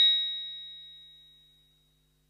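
Bright metallic chime of a TV programme's transition sting, ringing with several high tones and fading away over about two seconds into silence.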